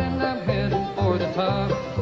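Bluegrass band playing an instrumental stretch between sung lines, banjo to the fore over guitar and a steady bass pulse of about two notes a second.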